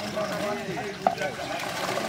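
Several men's voices talking over one another, with water splashing around a fishing net. One sharp click about a second in.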